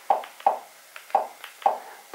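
Four short clicks, irregularly spaced, as the Kodi add-on menu is scrolled step by step with the remote control.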